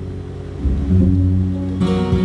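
Acoustic guitar strummed with an upright bass playing along, an instrumental gap between sung lines of a live folk song. Deep bass notes change about half a second and a second in, and a fresh guitar strum comes in near the end.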